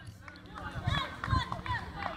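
Faint voices of people talking and calling out at a distance in open air.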